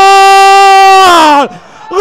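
A football commentator's long, loud held goal cry ('gooool'), one steady pitch for about a second that then slides down and breaks off. After a short breath the shout starts again right at the end.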